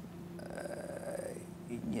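A man's faint, drawn-out low murmur, a hesitant 'mmm' while searching for words, starting about half a second in and fading out before the end.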